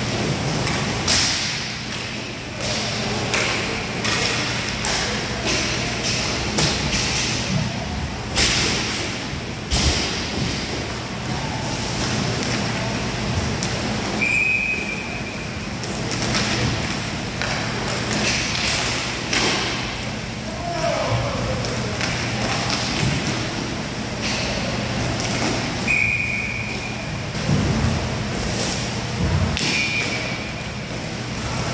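Inline hockey play: repeated sharp clacks and knocks of sticks and puck against the plastic floor and the boards, with players calling out in a large echoing rink. Brief high steady tones sound about 14 and 26 seconds in.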